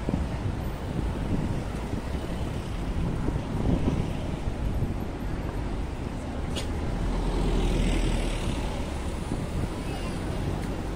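Road traffic passing close by on a busy city street: cars and a double-decker bus going past, a steady rumble that swells about seven seconds in as a vehicle passes, with pedestrians' voices mixed in.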